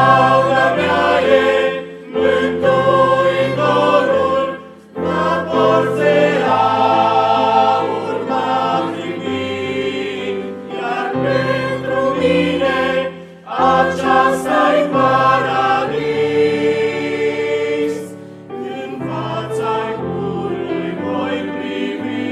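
Mixed church choir of men's and women's voices singing a sacred song in parts, in sustained phrases with short breaks between them.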